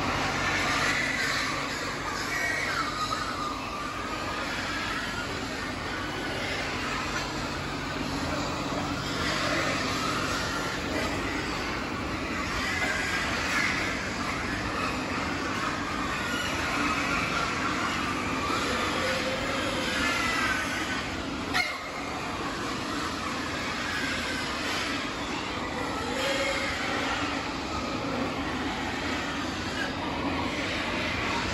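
Steady din of a large pig barn: ventilation fans running with pigs squealing on and off over it. One sharp knock about two-thirds of the way through.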